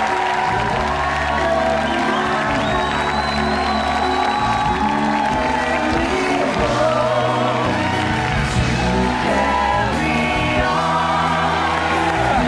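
A talk-show house band playing an upbeat number, with a studio audience cheering and clapping over it.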